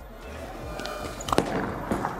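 Bowling ball delivery: footsteps of the approach, then two sharp knocks about half a second apart as the bowler plants at the line and the ball lands on the lane, followed by the ball starting to roll.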